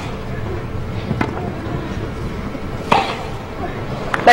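Tennis ball struck by rackets in a rally: two sharp hits about a second and three quarters apart, the second the louder, over a low steady background.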